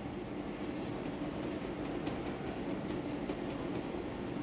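Steady low hum with a few faint light clicks of a plastic colander being handled over a metal pot.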